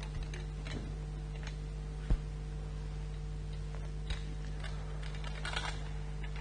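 Light clicks and knocks of objects being handled at a church altar as it is prepared for the offertory, with one sharper knock about two seconds in and a small flurry of clicks near the end. A steady low electrical hum runs underneath.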